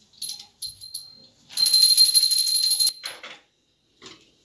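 Small brass puja hand bell ringing: a few separate rings in the first second, then rung rapidly and continuously for about a second and a half, then one last short ring.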